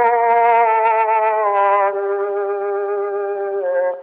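A male voice singing one long held note with a slight waver, stepping down a little near the end before breaking off, in a thin-sounding 1912 acoustic recording.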